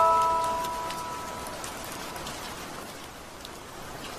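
Music-box notes ring on and fade out over the first second and a half, leaving a steady rain sound with scattered drop ticks.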